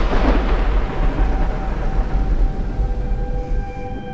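Thunder sound effect, a deep rumble slowly dying away, with sustained ominous music tones growing beneath it.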